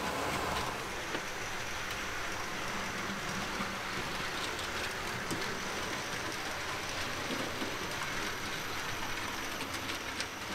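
Hornby OO gauge Terrier tank locomotive running on model railway track, pulling two four-wheel coaches: a steady running noise with faint scattered clicks.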